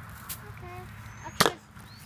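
A toy foam-dart blaster firing once: a single sharp snap about one and a half seconds in.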